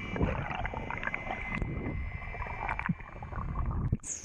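Underwater sound picked up through an action camera's housing during a freedive: water rushing and swirling around the housing, with a scattering of small crackling clicks and a faint steady high whine under it.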